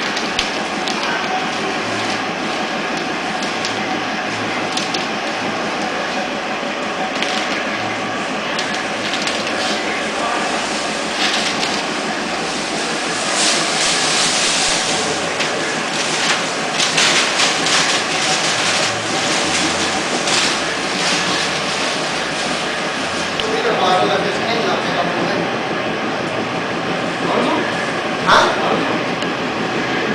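Steady running noise of compressed-air and paint-booth equipment during spray painting, with louder stretches of air hiss in the middle that fit a spray gun being triggered. A short sharp knock near the end.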